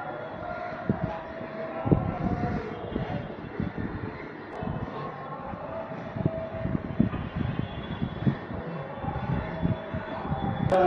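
Steady mechanical hum with irregular low knocks and bumps throughout.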